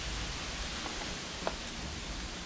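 Steady background hiss with faint rustling of old paper booklets being handled in a box, and a light tick about one and a half seconds in.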